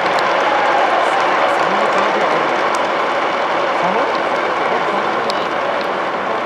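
Steady crowd noise from a baseball stadium's stands, an even wash of applause and murmur.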